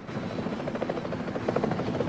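Helicopter rotor beating rapidly and steadily, growing a little louder.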